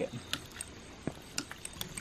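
Small PVC hydraulic ram pump running, its waste valve clicking shut about three times a second as each pulse of drive water cycles it.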